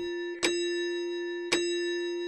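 Clock chime struck twice, about a second apart, as a bell-like tone that rings on after each strike.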